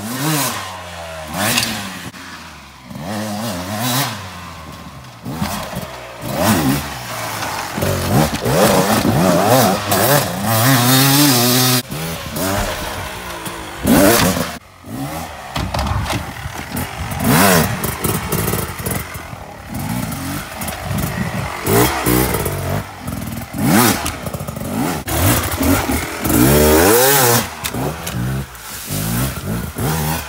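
2021 Beta 300 RR two-stroke enduro motorcycle being ridden hard off-road, its engine revving up and down over and over. The sound breaks off abruptly several times.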